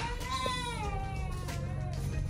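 A one-month-old baby crying: one long, drawn-out cry that rises a little in pitch, then falls, over quiet background music.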